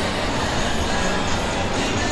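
Steady shopping-mall ambience picked up by a handheld camera microphone on the move: an even hiss over a low rumble, with no distinct events.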